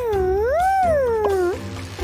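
A cartoon character's vocal sound effect: one long wordless call of about a second and a half that dips, swoops up and slides back down, over background music. A second call like it begins at the very end.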